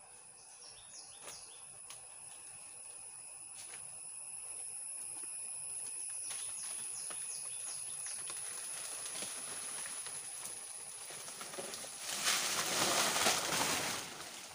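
Large banana leaves rustling and swishing as a banana plant is pulled down, swelling to a louder burst of leaf crashing near the end as the plant falls. A steady high insect drone and a few faint bird chirps sit behind it.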